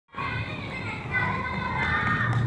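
Young children's voices calling out as they play and run, over a low steady hum.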